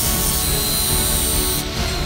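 Angle grinder with an abrasive disc grinding a steel pipe: a dense hiss over a steady high whine. Near the end the grinding hiss cuts off and the whine carries on, slowly falling as the disc spins down. Background music plays over it.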